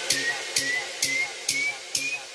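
Electronic music effect: a hissing noise hit repeating about twice a second, each with a short chirp that climbs higher in pitch with every repeat, while the whole sound fades down.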